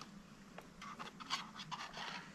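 Several faint, short rustles and scrapes in the second half, like handling a food pouch and scraping a spoon in it while eating, over a faint steady low hum.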